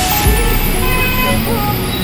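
Road traffic noise: cars and a city bus running through a busy intersection, with a low engine rumble swelling about a third of a second in. Voices of people nearby can be heard under it.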